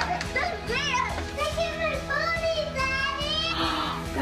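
Children's excited voices and squeals over background music.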